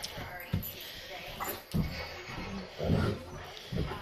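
Dogs playing and scuffling on blankets, with brief dog vocalizations and several low bumps at uneven intervals.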